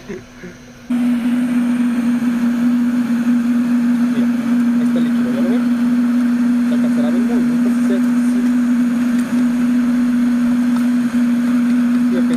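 Electric blower forcing air into a charcoal furnace that is melting bronze in a crucible: a steady motor hum with a rush of air, starting about a second in.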